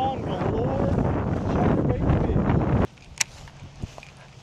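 Wind buffeting the microphone in a loud rumble, with faint voices under it. It cuts off abruptly near the end, leaving a quieter stretch with a couple of light clicks.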